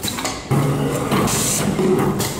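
FK909 semi-automatic labeling machine starting suddenly about half a second in and running as its rollers turn the bottle and apply the back label. A few light clicks come just before, as the bottle is set in the plastic fixture.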